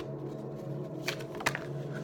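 A deck of tarot cards being shuffled by hand, the cards rustling, with two sharp card snaps a little past the middle. Quiet steady background music runs underneath.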